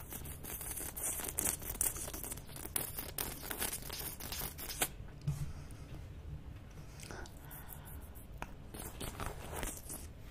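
Close-miked wet licking and sucking on a swirled twist lollipop: dense wet smacks and clicks over the first half, a quieter stretch, then more smacks near the end.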